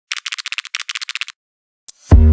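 A rapid rattle of sharp, thin clicks in two runs of about half a second each, followed by a single click near the end.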